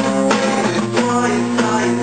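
Acoustic guitar strummed, ringing chords with several strokes across the two seconds.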